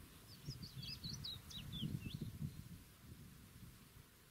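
A songbird singing one quick phrase of high chirps, about two seconds long, over a low, uneven rumble.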